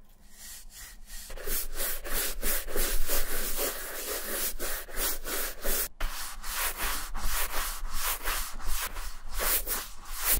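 PLABO horsehair shoe brush swept briskly back and forth over a sneaker's upper to dust it off: quick brushing strokes, about three a second, soft at first and louder after a second or so, with one brief pause midway.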